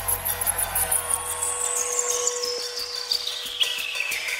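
Keytar synthesizer playing a held note while a high synth sweep falls steadily in pitch, over fast, regular hi-hat ticking. A low bass drone dies away about a second and a half in.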